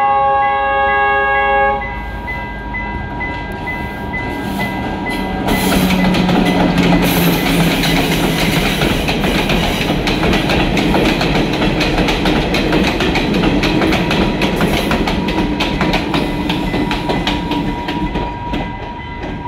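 Passenger train sounding a long multi-note horn that cuts off about two seconds in, then passing close by. Its engine drones and its wheels clatter and click over the rail joints as the carriages go by.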